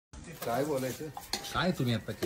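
A metal ladle stirring and scraping in a large metal kadhai of curry over a wood fire, with light metallic clinks.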